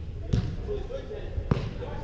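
A soccer ball struck twice, about a second apart: two sharp thuds with a short echo in a large indoor hall.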